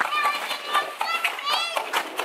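Young girls squealing and calling out in high voices as they play, in two bursts, with short scrapes and knocks of snow tools on icy pavement underneath.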